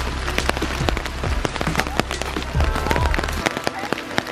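Rain falling, with many irregular raindrop taps on an umbrella close to the microphone, over a low rumble that stops about three and a half seconds in.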